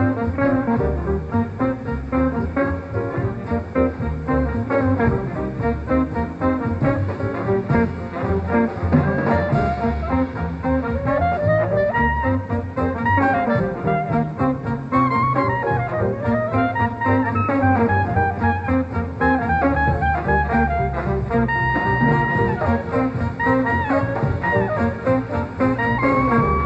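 Swing jazz band playing, the front line of trumpet, trombone, tenor saxophone and clarinet playing together over a swinging rhythm section.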